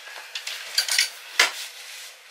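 Clothes hangers clicking and clinking against a wardrobe rail as clothes are taken out, a handful of short sharp clinks, the loudest near the end.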